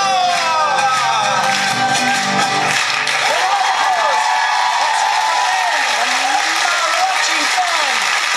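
A mariachi band finishing its song, with the last chord about three seconds in, followed by a studio audience applauding and cheering, with cries that rise and fall in pitch.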